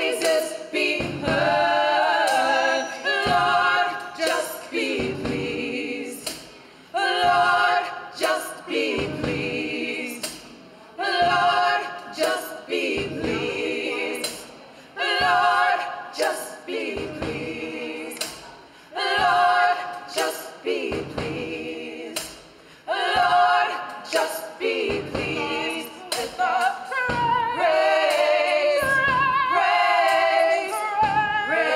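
Gospel choir singing in harmony in phrases that swell and fall back every few seconds, with sharp drum-kit strokes on snare and cymbals punctuating the singing.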